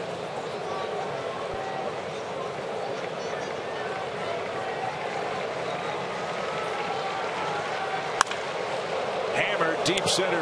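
Ballpark crowd noise, then about eight seconds in a single sharp crack of a wooden bat meeting the pitch for a home run, after which the crowd noise swells.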